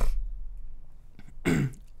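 A man clearing his throat: a short rough burst at the start and another about a second and a half in.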